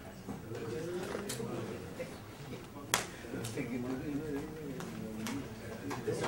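Indistinct low voices talking in a hall, with a single sharp click about three seconds in and a few fainter ticks.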